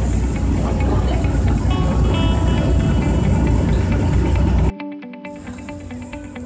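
Ferry engine's loud low rumble aboard the vessel, with a melody rising over it about two seconds in. About four and a half seconds in, the rumble cuts off abruptly, leaving quieter background music.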